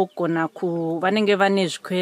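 A man's voice in sing-song speech, with syllables broken by short gaps and some drawn-out notes.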